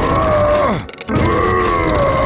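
A cartoon character's long strained groan, held twice: a short one, a brief break, then a longer one that wavers near the end.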